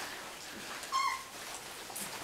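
A three-week-old golden retriever puppy gives one short, high-pitched whimper about a second in.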